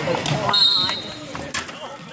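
Wrestlers going down onto the wrestling mat with one sharp thud about one and a half seconds in, over spectators' raised voices.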